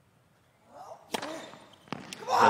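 Tennis ball struck hard with a racket, with a short grunt from the player on the shot, then a second sharp racket strike about three-quarters of a second later as the ball is hit back.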